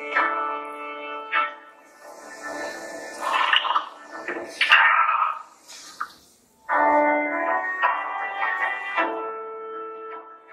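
Electronic keyboard playing held chords, which stop about a second and a half in. A few seconds of noisier, rushing sound fill the middle, then the level dips briefly before the held chords start again about seven seconds in.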